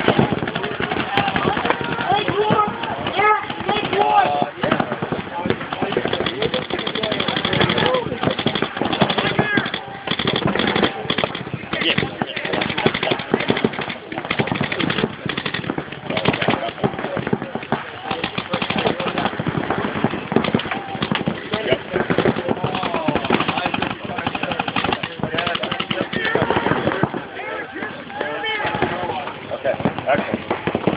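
Paintball markers firing in rapid strings, many shots a second and overlapping, with people shouting across the field, most clearly near the start and near the end.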